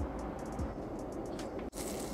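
Steady airliner cabin noise under faint background music. Near the end comes a short, loud, hissing slurp as noodles are sucked up from a bowl of ramen.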